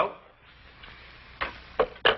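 Desk telephone handset being hung up, two short knocks near the end as it is set down on the cradle.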